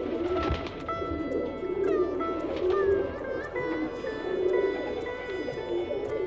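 Domestic pigeons cooing over background music of plucked strings with some sliding notes.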